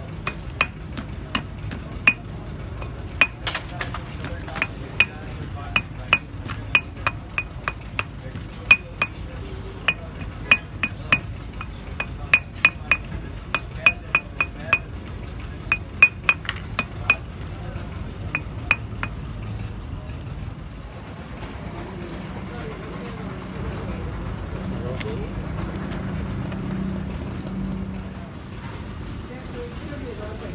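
Hammer tapping a rubber-and-metal oil seal down into a cast-iron bearing housing: sharp, ringing metal-on-metal taps about two a second, which stop about twenty seconds in.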